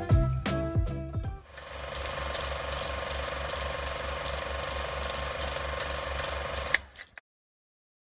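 A guitar-like music tail fades out. Then comes a film-projector-style mechanical clatter sound effect: even clicking about four times a second over a steady tone. It cuts off abruptly about seven seconds in.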